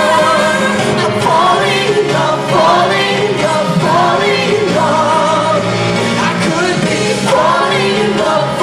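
Live band playing a pop song with a lead vocal over drums, guitar and keyboard. It is heard from the audience floor of a large hall.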